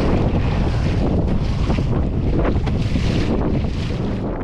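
Strong wind buffeting the microphone, over water splashing and slapping against the hull of a Hobie Outback fishing kayak moving through choppy waves.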